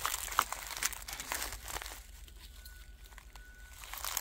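Footsteps rustling and crunching through dry forest undergrowth in short irregular crackles, busier in the first half and thinning out after about two seconds.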